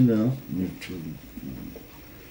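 A man's speech ending about half a second in, followed by a quieter, low voice murmuring in the room.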